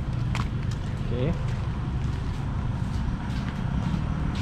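Steady low rumble of road traffic, with one sharp click about half a second in.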